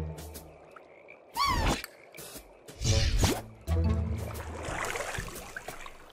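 Cartoon sound effects over background music: a wavering, sliding tone about one and a half seconds in, then a quick swooping sound about three seconds in.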